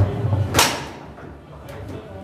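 Foosball table in play: a sharp knock right at the start, then a loud crack about half a second in as the ball is struck hard and hits the table, dying away quickly.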